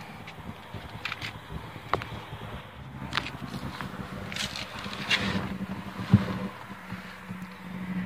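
Handling noise from a handheld phone camera: scattered light clicks and rustles over a faint steady low hum. The sharpest click comes just after six seconds in.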